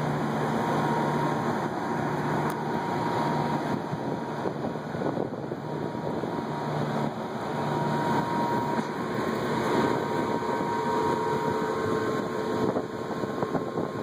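Rooftop HVAC equipment running steadily, a continuous mechanical hum with a faint steady whine above it and a low tone that comes and goes.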